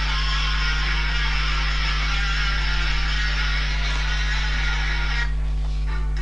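Recorded music playing over a steady low electrical hum; the bright upper part of the music cuts off abruptly about five seconds in.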